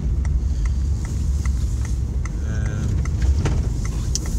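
Inside the cabin of a moving van, a steady low rumble of engine and road noise, with faint regular ticking about two to three times a second.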